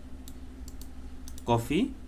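Several faint, separate computer keyboard keystrokes and clicks over a low steady hum, followed by a brief spoken word near the end.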